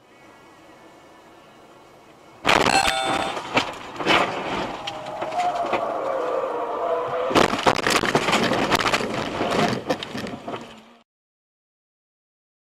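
A car crash heard from inside the dashcam car. After a few seconds of faint cabin noise comes a sudden loud impact, then crunching and a wavering metal scrape against the concrete roadside barrier. A second burst of bangs and crunches follows about seven seconds in, and the sound cuts off abruptly about a second before the end.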